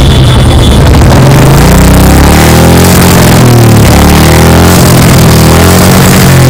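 Royal Enfield motorcycle engine running and being revved, its pitch rising and falling several times, with music playing over it.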